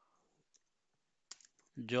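A few quick computer keyboard key clicks, about a second and a half in, as a word is typed.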